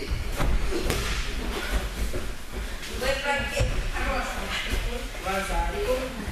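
Thuds and scuffling of bodies hitting and grappling on judo mats as one wrestler throws the other down, loudest in the first second. Indistinct voices follow in the second half.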